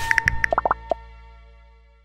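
Closing jingle of an app advert: a quick run of short bubbly pops in the first second over a held music chord, which then fades away.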